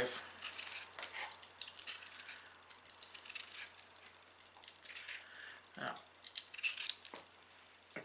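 Potatoes being peeled by hand: a run of faint, irregular scraping and small clicks of the blade against the skin.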